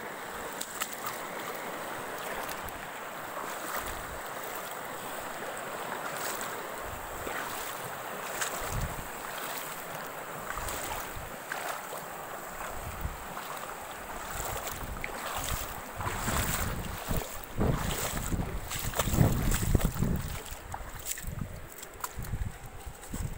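Shallow river water flowing over rocks, a steady rush. Low buffeting on the microphone comes in during the second half and is loudest a few seconds before the end.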